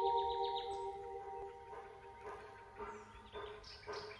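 Soft ambient music fading out over the first second, leaving a run of short bird chirps repeating through the quiet.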